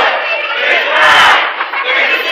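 A crowd of children shouting and cheering together, many voices overlapping.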